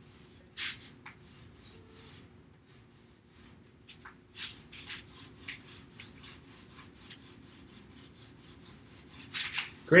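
Wax crayon rubbed back and forth over paper laid on a ridged corrugated-paper texture, a run of short scratchy strokes. The strokes come several a second at times and grow louder near the end.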